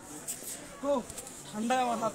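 Two short utterances of a person's voice, one about a second in and a louder one near the end, over quiet street background.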